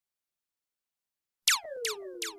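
Silence, then near the end two quick synthesizer zaps, each falling steeply in pitch, about 0.4 s apart: the opening of an electronic dance track.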